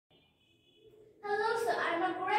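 A girl starts speaking into a handheld microphone about a second in, after a moment of faint room tone with a thin, steady high tone.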